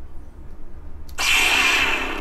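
A Sabertrio Skylar lightsaber's soundboard playing its ignition effect through the hilt speaker. The effect starts suddenly about a second in as the blade lights and keeps sounding loudly.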